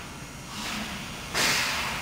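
Flush valve on a GlasCraft adhesive putty dispense gun opened, sending a sudden hiss of pressurised flow through the gun's mixer about one and a half seconds in, easing off slightly after the onset; this is the purge that clears putty and catalysed material from the mixer.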